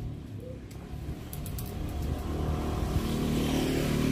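A passing car approaching along the road, its engine and tyre noise growing steadily louder.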